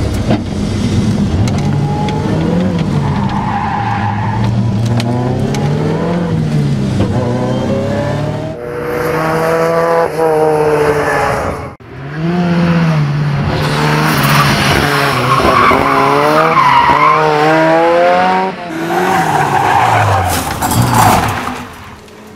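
Ford Sierra RS Cosworth's turbocharged 2.0-litre four-cylinder engine at racing speed, heard mostly from inside the car, its pitch climbing and dropping again and again through hard acceleration and gear changes. Tyre squeal joins in as the car slides through corners.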